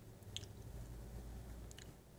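Faint, close-miked mouth sounds of someone eating ice cream: wet squishing and a few small lip clicks over a low steady hum.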